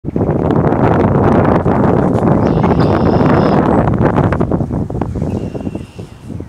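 Wind buffeting the camera's built-in microphone: a loud, uneven rumble with crackles that eases off in the last second.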